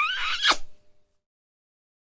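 A kiss sound effect: a short wavering hum, then a sharp lip smack about half a second in, over within about a second.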